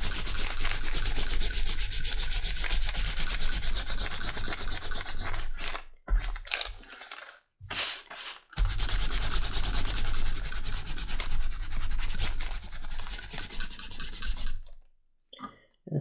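A cloth-covered block is rubbed back and forth in rapid strokes over stamped leather, block dyeing so the dark dye lands only on the raised flat surface. The strokes pause briefly about six and eight seconds in, and stop about a second before the end.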